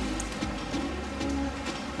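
A steady low buzzing hum, with faint light rustling of small folded paper origami units being scooped up by hand.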